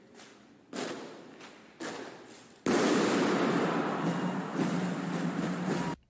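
Rifle drill team firing blanks in a large hall: two sharp knocks about a second apart, then a sudden loud volley about two and a half seconds in, followed by a sustained rush of noise that echoes round the hall and cuts off abruptly at the end.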